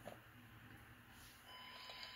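Near silence: room tone, with a faint, thin steady electronic tone coming in about one and a half seconds in.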